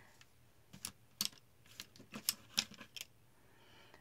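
Quiet, irregular clicks and taps of art supplies being handled, about ten of them over two seconds, like hard sticks knocking against each other or a case.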